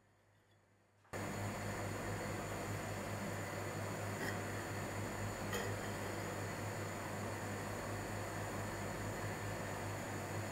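Steady background noise, an even hiss over a low hum, starting suddenly about a second in after near silence, with two faint ticks near the middle.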